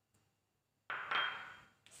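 A porcelain plate handled on a tabletop: a sudden clatter about a second in, with a faint ring fading over about a second, then a small click.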